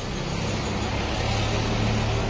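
A motor vehicle running, a steady low engine hum under road noise that grows slightly louder.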